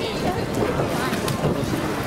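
A steady, loud rushing noise with indistinct voices mixed in, the ambient din of an indoor pool hall.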